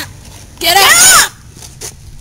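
A boy's loud, wavering shout lasting under a second, starting about half a second in, followed by a few faint clicks.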